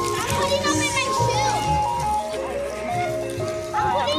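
Background music with a melody and bass beat, with children's high voices and calls over it.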